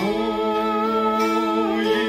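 A man and a woman singing a Lithuanian folk song together, sliding up into one long held note at the start, with kanklės (Lithuanian plucked zithers) played beneath.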